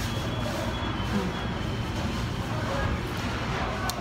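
Steady low hum of commercial bakery machinery, with faint voices in the background.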